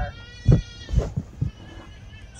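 A high-pitched, drawn-out call lasting about a second, with a few dull low thumps during it.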